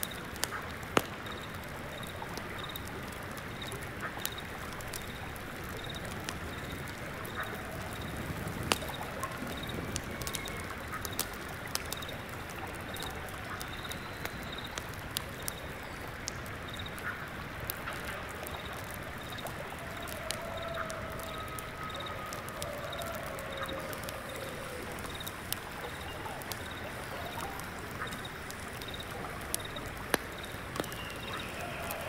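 Layered ambience: a stream flowing steadily, with scattered sharp crackles of embers in an incense burner and a single insect chirping at an even pace. A few short bird calls come through in the middle.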